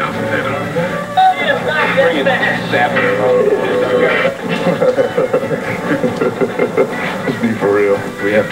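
Television broadcast audio played through a TV set: music with voices over it, continuous.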